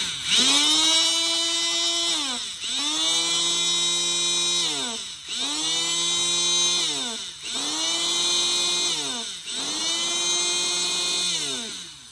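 Electric hydraulic rebar cutter's motor running in repeated cycles: it speeds up to a steady whine for about two seconds, then its pitch sags and drops before it picks up again, about five times, stopping just before the end. The motor runs fine, but the cutting head is said not to hold up.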